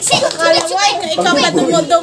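A group of young people shouting and laughing over one another in excited, overlapping voices.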